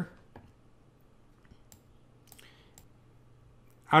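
A few faint, scattered clicks of a computer mouse as a settings panel is scrolled.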